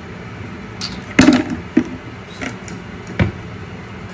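Short, sharp scratchy rustles and clicks from fingers digging through a crocheted faux loc to find the braid beneath, about six in all, the loudest about a second in.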